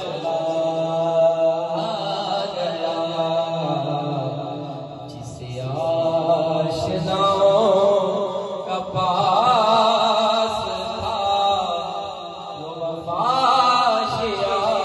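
A man singing a devotional Urdu kalam into a microphone in a chanting style, in long, wavering held phrases with short breaks between them.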